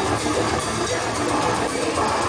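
Technical death metal played live by a full band: distorted electric guitars, bass and drums, dense and loud without a break.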